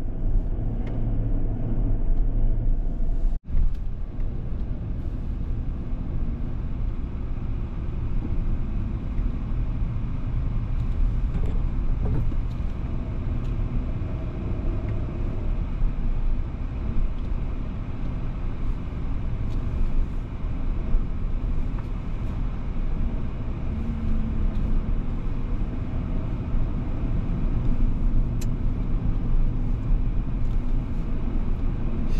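Steady road noise heard inside a moving car's cabin: a low rumble of tyres and engine. The sound cuts out for an instant about three seconds in.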